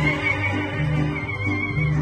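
Mariachi ensemble playing an instrumental passage: violins carry a wavering melody over guitarrón bass notes that change about twice a second, with guitars, vihuela and harp behind.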